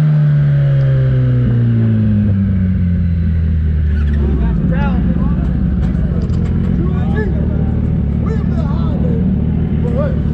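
Motorcycle engine winding down as the bike slows, its pitch falling over the first four seconds, then idling steadily. Voices talking nearby from about four seconds in.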